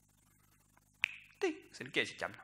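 About a second of near silence, then a sharp finger snap, followed by a man's voice.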